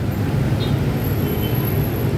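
Steady low rumble of street traffic, with motorbike engines running as they pass close by.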